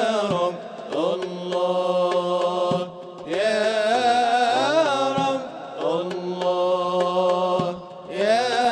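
A man's solo voice singing an Islamic devotional chant (inshad) in four long, ornamented phrases that bend up and down in pitch, with short breaks between them, over a low steady held note.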